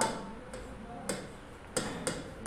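A pen tip tapping and clicking against an interactive display board's screen while writing: three light, separate ticks.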